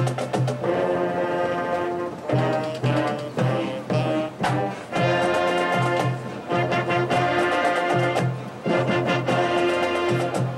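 Marching band playing loud, sustained brass chords with percussion hits, in short phrases that break off and come back in every two to three seconds.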